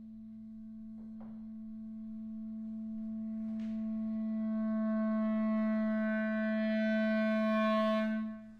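Clarinet holding one long low note that swells steadily from almost nothing to loud, its tone growing brighter as it grows louder. Two faint clicks come about a second and three and a half seconds in.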